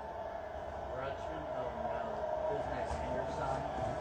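Faint, indistinct background speech over a steady low room hum.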